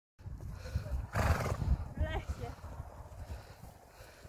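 Horse trotting under a rider on a gravelly arena surface, its hoof falls coming as dull thuds in a steady rhythm. A short rush of noise about a second in is the loudest moment, and a brief wavering call follows about two seconds in.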